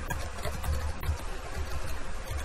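Typing on a computer keyboard: a quick run of key clicks and soft low thumps over a steady low rumble.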